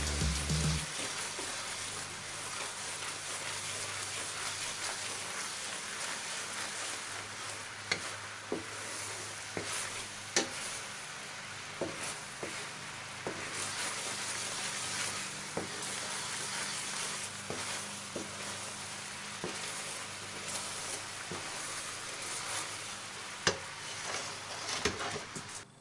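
Gochujang sauce bubbling at a boil in a frying pan while a wooden spoon stirs it, with scattered sharp knocks of the spoon against the pan. Background music plays for about the first second.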